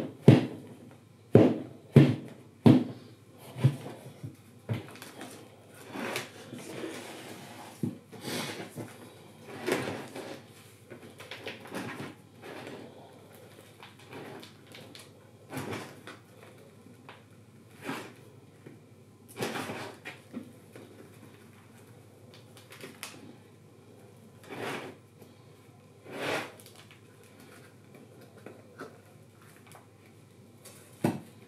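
Square plastic plant pots knocked and tapped against a tabletop and plastic tray while tomato seedlings are potted on, with faint rustling of compost between. Several sharp knocks come in the first three seconds, then softer taps spaced a few seconds apart.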